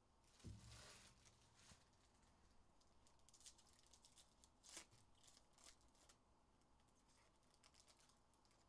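Faint tearing and crinkling of foil trading-card pack wrappers being opened and handled, with a soft thump about half a second in and scattered light rustles and ticks after.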